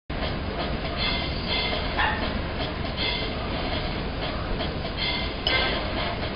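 Steady rumbling noise, strongest at the low end, with a few brief rustles on top.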